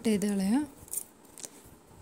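Scissors cutting, with a few short sharp snips about a second in, after a woman's brief spoken word.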